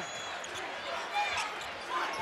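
Arena crowd noise during a basketball game, with a basketball being dribbled on the hardwood court.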